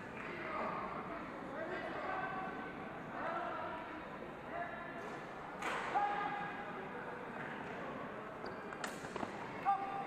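Indistinct chatter of many voices echoing in a large sports hall, with a few sharp knocks, the loudest about six seconds in and near the end.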